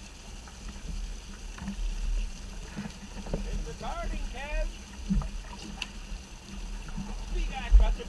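Wind buffeting the microphone and choppy water against the hull of a small open skiff, with scattered knocks. A man's voice calls out about four seconds in and again near the end.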